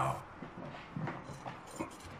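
Faint rustling with a few soft knocks, about a second in and near the end, from a person getting up out of a wooden chair behind a desk.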